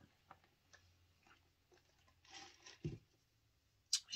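Faint mouth sounds of sipping a drink through a straw and swallowing: a few small wet clicks, a soft breathy hiss a little after two seconds, and a low thump near three seconds.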